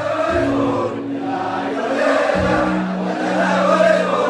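Live concert music: many voices singing along together in chorus over steady, held low notes from the band.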